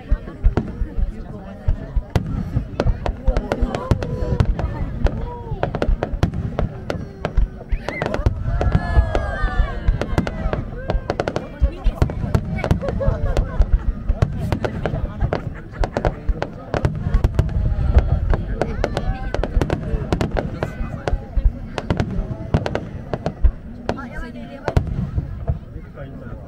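Aerial firework shells bursting in a rapid barrage: a dense run of sharp bangs and crackles over a continuous deep rumble, thinning out near the end.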